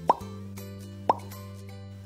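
Cartoon 'plop' sound effects, two short upward-sweeping pops about a second apart, ticking off a quiz countdown over soft background music with steady held tones.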